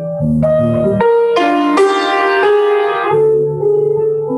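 Grand piano played solo: an improvised passage of melody over sustained chords, with a fuller, louder chord about a second and a half in.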